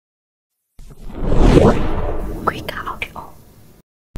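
Logo intro sound effect: after a short silence, a noisy, breathy swell builds about a second in, carries a few quick gliding sweeps, then dies away just before the end.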